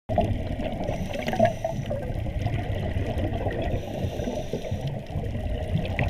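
Scuba diver's regulator exhaust bubbles heard underwater: a continuous low, muffled bubbling and rumble.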